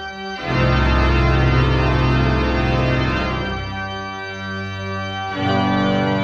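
Moser pipe organ playing sustained chords with a deep bass. After a brief break at the start, the full chord holds, thins out without the bass a little past the middle, and comes back in full near the end.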